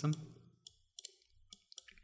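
A few short, sharp clicks of a computer mouse, spaced a few tenths of a second apart, as the 3D view is orbited. The end of a spoken word is heard at the very start.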